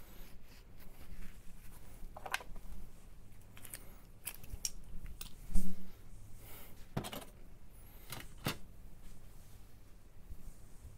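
Small hobby tools and plastic parts being picked up and set down on a cutting mat: a scatter of sharp clicks and taps, with a louder knock a little past halfway.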